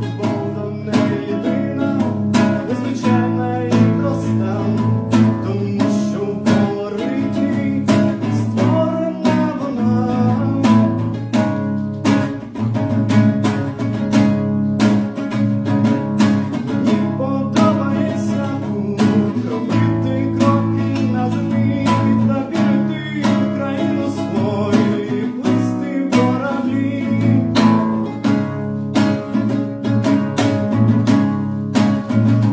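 Classical nylon-string acoustic guitar strummed in a steady rhythm of full chords.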